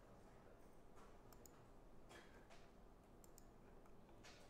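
Near silence: faint room tone with a handful of light clicks from a computer mouse as the script is run.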